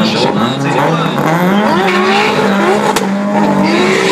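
Two drag cars, one of them a turbocharged VW Golf Mk1, launching off the start line with engines revving hard as they accelerate away down the strip. A single sharp crack comes about three seconds in.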